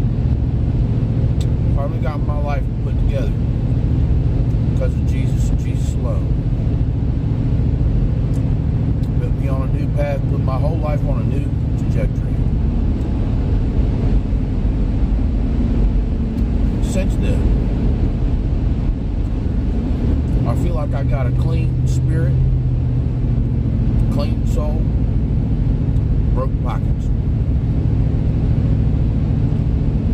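Steady low rumble of a vehicle engine running, heard from inside the cabin, with brief snatches of a voice a few times.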